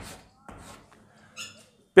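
Chalk writing on a chalkboard: a couple of short, faint scratching strokes in the first half second or so as the last letters are finished. A brief faint high-pitched sound follows about a second and a half in.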